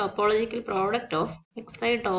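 Speech only: a lecturer talking in continuous phrases with brief pauses.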